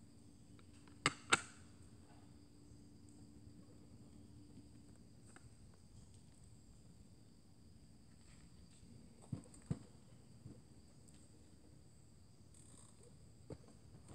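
Two sharp clicks about a second in, a quarter second apart, as magnet-held inner-detail panels snap into a fiberglass chest piece. Two more knocks come just before the ten-second mark as the fiberglass shell is handled. Under it all is a faint, steady, high insect buzz.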